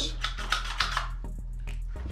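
Faint clicks and rattles of a foldable reach-and-grab pickup tool being handled, its jaws worked open and closed, over a steady low hum.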